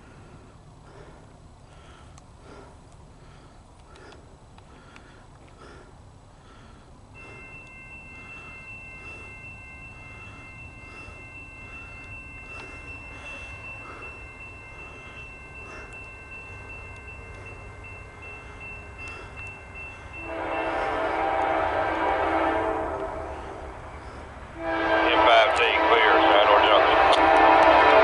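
Norfolk Southern freight train approaching with a low diesel rumble that slowly grows, then the locomotive's horn sounds two loud blasts, the second longer and louder, starting about two seconds after the first ends.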